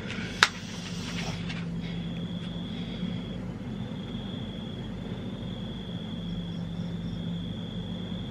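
Steady low hum and hiss with a faint high-pitched whine, broken by a single sharp click about half a second in.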